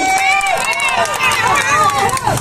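Voices in a street crowd: several people talking and calling out over one another.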